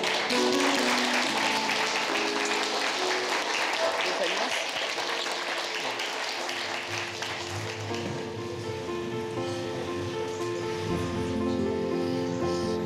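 A roomful of guests applauding over background music; the clapping dies away about halfway through, leaving the music playing on.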